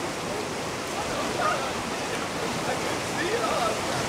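Fast river rapids rushing steadily, with faint voices a couple of times underneath.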